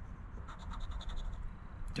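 A coin scraping the coating off a scratch-off lottery ticket in a quick run of short repeated strokes.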